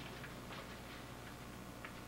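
A few faint, irregular clicks and light rustles of paper sheets being handled, over a steady low hum.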